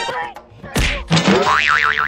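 Cartoon "boing" sound effect: a sudden thump about three quarters of a second in, then a springy tone that warbles rapidly up and down.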